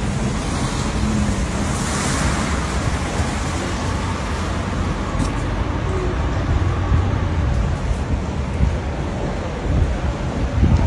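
Steady traffic noise on a wet city street, tyres hissing on the wet road, with a low rumble of wind on the microphone.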